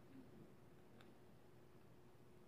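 Near silence: room tone with a faint steady hum and one faint tick about a second in.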